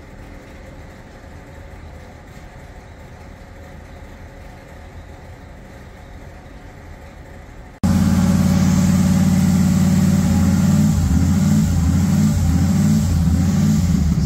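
Engine of a Bombardier snow coach fitted with Holley Sniper fuel injection, running loudly, comes in abruptly about eight seconds in after a faint low hum. Its note turns uneven toward the end.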